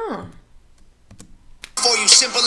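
A short vocal hum from a woman, its pitch sliding up then down, then a few faint computer clicks as paused playback is resumed, and a rap track with hip hop beat comes back in loud near the end.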